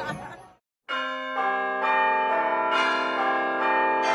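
A tune played on bells: ringing, chime-like notes struck about every half second, each one ringing on into the next. It begins about a second in, after the bar's voices and music fade out and a brief silence.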